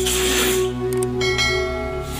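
Background music, with a whoosh near the start and a ringing bell chime a little over a second in: the sound effects of a subscribe-button animation.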